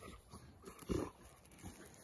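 A dog rolling on its back in grass, making brief squeaky grunts, the clearest about a second in.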